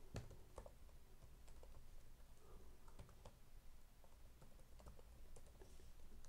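Faint typing on a computer keyboard: scattered, irregular key clicks.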